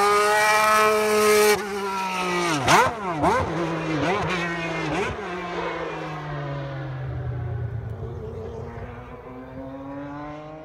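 Honda-powered McLaren MP4 Formula One car's engine running at high revs close by. About three seconds in its pitch dips and jumps back up several times as it goes down the gears, then the note sinks and fades as the car pulls away, rising again faintly near the end.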